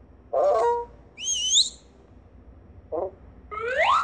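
Cartoon sound effects from a children's story app animation: a short voice-like sound, then a high warbling whistle, and near the end a quick rising glide in pitch.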